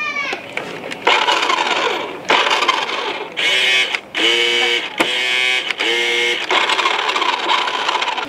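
Large remote-control toy car's electric drive motors whirring in a series of bursts about a second long as its wheels spin with the car upside down, some bursts with a steady whine. A sharp click about five seconds in.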